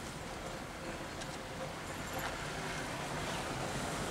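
Steady car road noise heard from inside the cabin: engine and tyres while driving slowly over a rough campground road.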